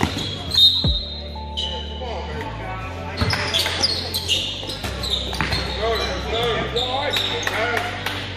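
Basketball game sounds: the ball bouncing and sneakers squeaking on the court floor, under music with a deep bass line that steps from note to note about once a second. Voices run through it.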